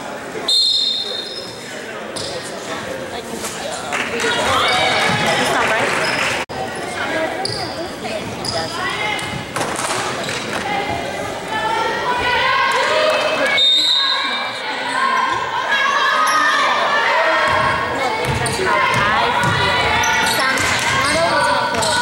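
A basketball bouncing on a hardwood gym floor, under constant overlapping voices of players and spectators, echoing in a large gymnasium.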